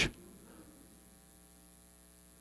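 Faint, steady electrical mains hum, a set of even, unchanging tones. It is heard in a pause just after the last word of a man's speech cuts off at the very start.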